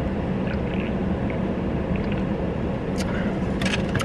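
Steady low hum inside a car's cabin, typical of the engine idling. Faint clicks are heard, and about three seconds in there are sharper clicks and a sip from a can of Coca-Cola.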